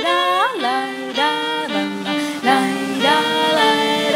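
Live jazz ensemble playing: a violin carries the melody in short held notes with upward slides, over piano and double bass.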